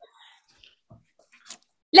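A near-silent pause with faint room tone and a single short click about one and a half seconds in, followed by a woman's voice starting to speak at the very end.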